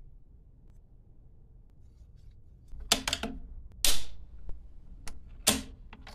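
Sharp metallic clicks and clacks of a bolt-action rifle's bolt being handled, its firing-pin spring freshly greased. After a quiet start there are about five separate knocks in the second half, the loudest just before the four-second mark.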